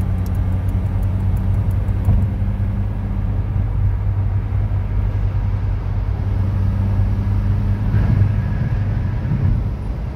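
Car driving at highway speed heard from inside the cabin: a steady low drone of engine and road noise with a constant low hum.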